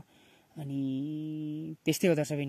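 A man's voice holding one drawn-out vowel or hum on a steady, flat pitch for just over a second, starting about half a second in.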